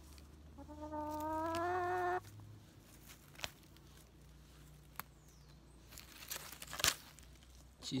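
A hen held in the arms gives one drawn-out, slightly rising call of over a second, about half a second in. Near the end comes a brief rustle of handling.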